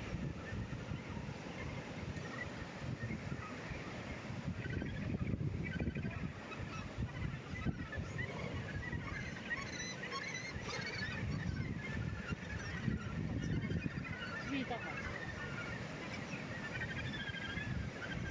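Many birds calling, their short wavy calls overlapping and growing more frequent from about five seconds in, over a steady low rumble.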